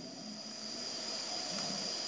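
Pause in the narration: steady low background hiss with a faint, thin high-pitched whine running under it.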